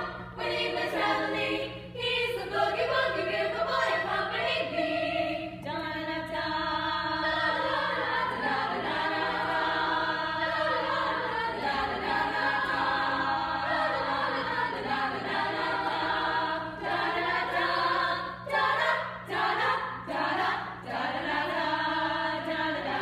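Women's choir singing a boogie-woogie number in several-part harmony, the sung phrases running on without a break.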